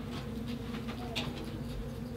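A steady low buzzing hum, with a few faint short clicks over it.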